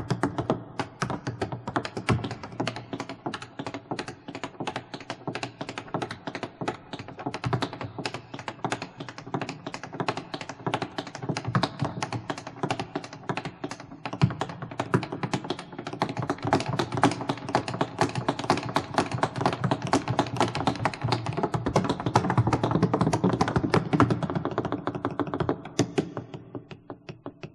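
Tap shoes striking a wooden stage in a fast, continuous run of taps, growing louder over the second half.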